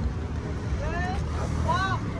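Two short, rising-and-falling voice calls, about half a second long each, one a second in and one near the end, over a steady low rumble.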